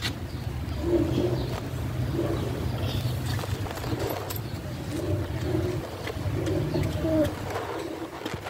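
Doves cooing: short low calls repeated every second or so over a steady low background hum.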